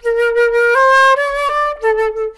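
Concert flute playing a short phrase: a held note, then two steps upward, a brief break, and a return to the lower note near the end. It is played as a softer entry that grows a little louder.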